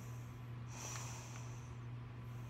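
A soft, breath-like hiss lasting about a second, over a steady low hum.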